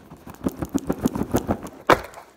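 Close handling noise while a package is opened with the recording phone in hand: a quick run of scrapes, rustles and light knocks, with one sharp knock near the end.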